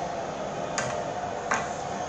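Two short, sharp clicks, one a little under a second in and one about half a second later, over a steady background hiss.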